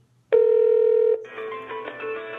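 Audio on a telephone line: a loud steady tone starts about a third of a second in and lasts under a second, then gives way to music of many held notes as the call is put through after the keypress.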